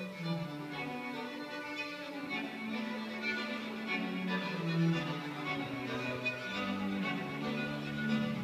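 A small group of violins playing a piece together, bowed notes changing every second or so, with lower held notes beneath the melody.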